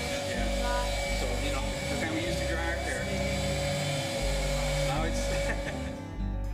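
Handheld heat gun running on its hot setting with a steady whine, drying acrylic paint, and stopping near the end; background music and voices underneath.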